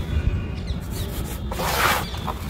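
Hands rubbing and sifting dry, dusty powder in a plastic tub, the fine grains running through the fingers, with a louder rushing crunch about one and a half seconds in as both hands push down into the powder.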